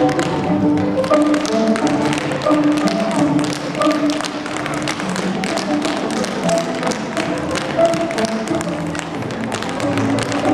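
Tap shoes of several dancers striking a wooden stage floor in many quick, rhythmic taps, over recorded music with a melody.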